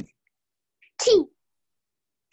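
A single short, sharp burst of a person's voice about a second in, falling in pitch, with a faint click just before.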